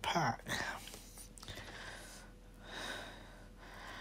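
A man's voice in a soft, breathy stretch: a brief voiced sound at the start, then quiet whispering and breaths.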